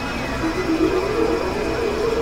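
Experimental electronic synthesizer music: held drone tones over a low rumbling noise, with a wavering mid-pitched tone entering about half a second in and stepping upward.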